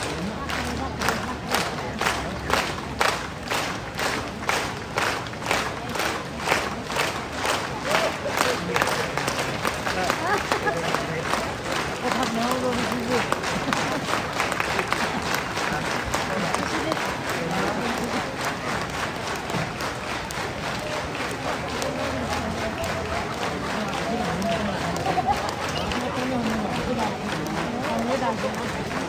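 A large crowd claps in unison, about two claps a second. After roughly ten seconds the rhythm breaks up into continuous applause and crowd noise.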